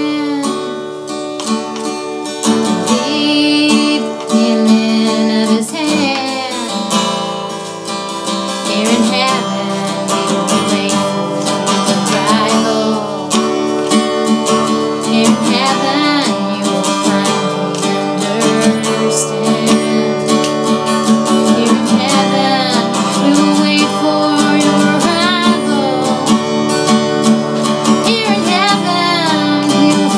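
Acoustic guitar strummed in steady chords, with a woman singing along in a wavering, held voice.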